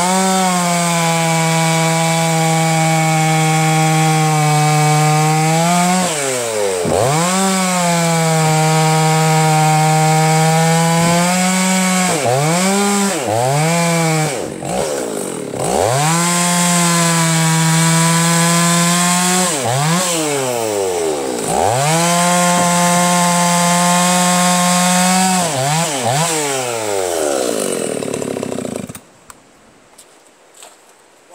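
Two-stroke Husqvarna chainsaw cutting through a log at full throttle on its first run, going through its heat cycles. Its pitch dips and comes back up several times as the throttle is eased between cuts, then falls away and the engine stops near the end.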